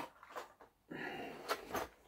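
Handling noise from gear being taken from a cabinet: a sharp knock at the start, a couple of light clicks, then about a second of rustling and scraping as a clear plastic lure box is handled.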